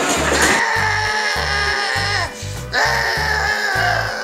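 A man wailing in pain in two long, wavering cries with a short break between them, his legs crushed under a fallen tractor, over background music with a repeating bass line.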